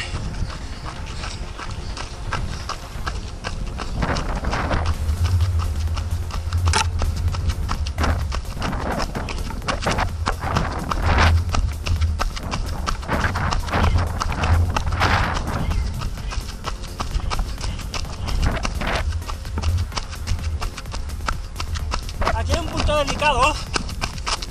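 Running footsteps on a dirt trail: a run of quick, repeated footfalls, with a low rumble underneath from about five seconds in.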